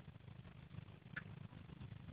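Faint outdoor background: a low steady rumble, with one brief high sound just after a second in.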